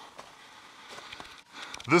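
Faint scuffing and rustling footsteps of a person climbing over dry leaves and loose shale, a few soft ticks and crunches, with a spoken word starting at the very end.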